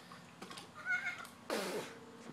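A short high-pitched call about a second in, then a brief splash of pool water as a swimmer moves.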